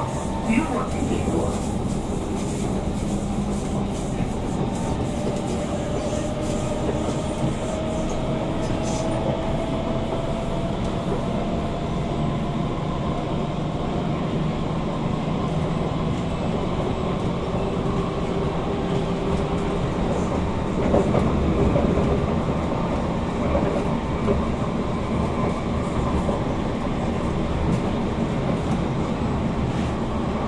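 Interior running noise of a Kawasaki Heavy Industries C151 metro train under way: steady rolling rumble with the traction motor's whine, strong in this car, rising slowly in pitch through the first half as the train picks up speed, then settling into a lower tone.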